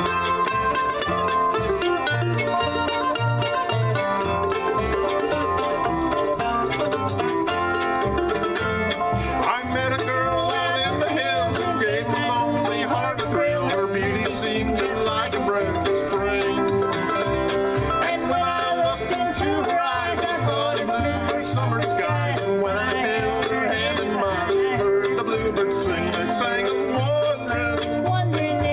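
Acoustic bluegrass band playing live just after the count-in: fiddle, five-string banjo, mandolin, acoustic guitar and upright bass together, the banjo prominent over a steady bass pulse.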